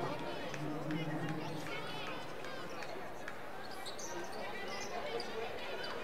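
Basketball game sounds on a hardwood court: a ball bouncing, sneakers squeaking in short high chirps, and crowd voices murmuring through the arena.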